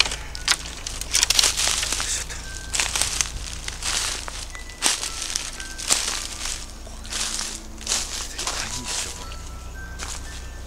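Footsteps crunching and rustling through dry leaf litter on a forest floor, at an irregular pace. A few faint, short high tones sound in between.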